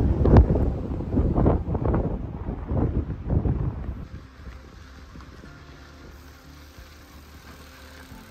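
Wind buffeting the microphone in loud, uneven gusts that drop away about four seconds in, leaving a quiet background hum with faint steady tones.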